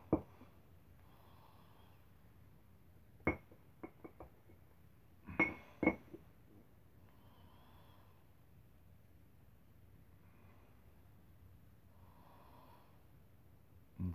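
Quiet handling sounds: a sharp click at the start, another about three seconds in with a few small ticks after it, then two louder metallic clinks about five and a half seconds in as a steel bar is set down on a concrete floor. Otherwise quiet room tone.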